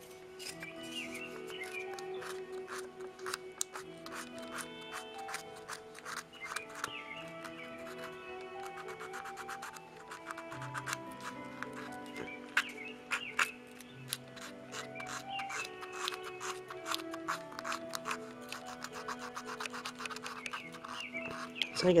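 Soft background music of held, slowly changing notes, with faint irregular scratching underneath from hand-sanding of the carved wooden feathers.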